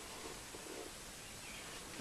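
Faint room tone with soft handling of a plush toy, a brief rustle about half a second in.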